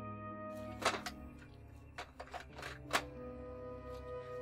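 Soft film score of sustained tones, with a series of sharp clicks and clunks from a portable radio-cassette player being handled: two about a second in, then a quick run between two and three seconds, the loudest near the end of that run.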